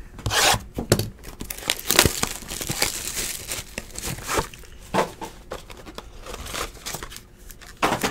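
A sealed Luminance football card hobby box being torn open and its foil card packs handled: an irregular run of tearing and crinkling rustles.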